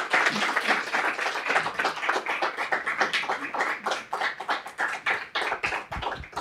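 A small audience applauding, many hands clapping together, the clapping thinning out near the end.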